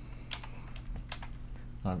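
Computer keyboard typing: a few separate, spaced keystrokes.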